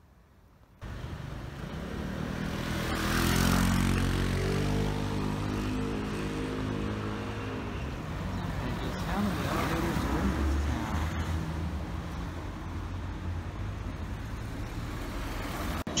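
Urban road traffic: a motor vehicle's engine hums loudly as it passes by about three to eight seconds in, over a steady low traffic rumble.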